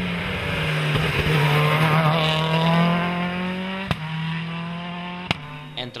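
Seat Córdoba World Rally Car's turbocharged four-cylinder engine held at high, fairly steady revs as the car climbs past, getting louder then fading. Two sharp cracks come in the second half.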